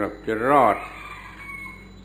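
A Buddhist monk speaking in a recorded Thai talk: a short word, then one drawn-out word whose pitch rises and falls, followed by a pause with low hiss.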